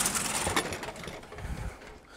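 Handling noise from a dust extractor hose and power cord being pulled out and carried to the table: rustling with a few light knocks and clicks, loudest in the first second and fading off.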